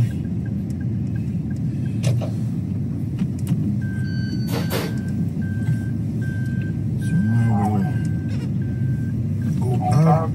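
Steady low road and engine rumble inside a moving car's cabin. From about four seconds in, a run of about eight short high beeps roughly every half second, with a brief burst of noise as they begin.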